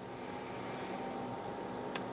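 Programmable AC power source putting out a mains sine wave with white noise injected into it, heard as a steady hiss with a faint hum; it is working hard under the noise load. A short click comes just before the end.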